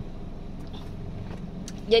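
Toyota Agya's engine idling steadily, heard from inside the cabin as a low, even hum.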